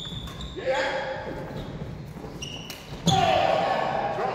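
Doubles badminton rally on a wooden sports-hall court: sharp racket hits on the shuttlecock and squeaks of court shoes, echoing in the large hall, with players calling out. About three seconds in comes the loudest moment, a hit together with a loud shout.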